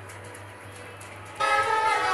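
Quiet room tone with a low hum, then about one and a half seconds in a group of violins suddenly starts playing together, loud and holding several notes at once.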